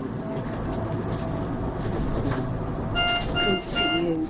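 Low steady road and engine rumble inside an ambulance's patient compartment while it is driving. Near the end come three short electronic beeps in quick succession.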